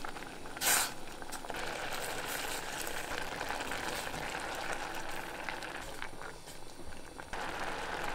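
Risotto rice simmering in saffron vegetable broth in a stainless steel pot as a spatula stirs it: a steady bubbling hiss, with a brief louder burst about a second in. This is the rice cooking in its broth just after the toasting stage.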